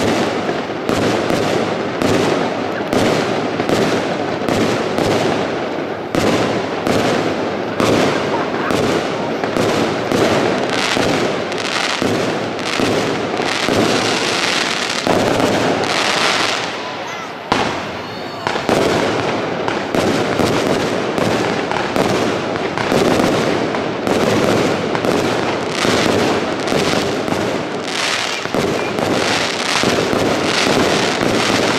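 Aerial fireworks display: a rapid, continuous barrage of bursts and crackling, with a brief lull about 17 seconds in.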